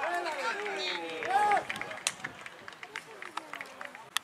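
Several men shouting during a football match, overlapping calls with the loudest, a held shout, about a second and a half in. The voices then thin out and scattered sharp knocks and taps follow.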